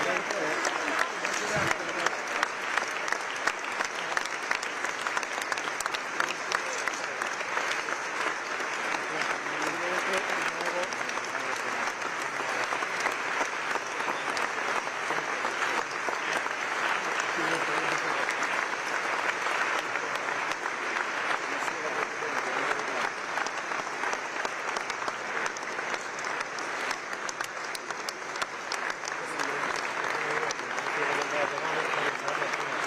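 A large crowd applauding continuously, many hands clapping at once.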